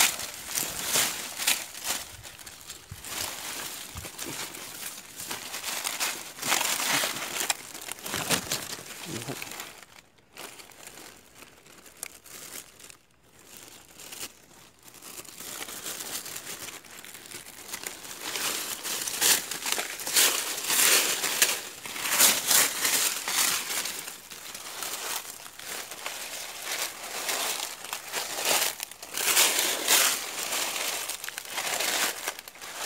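Crinkling of a thin plastic bag and rustling of dry leaf litter, in irregular bursts, as wild mushrooms are picked and bagged. There is a quieter stretch about ten seconds in.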